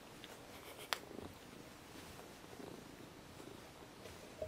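Domestic cat purring faintly, with one sharp click about a second in and some soft rustling.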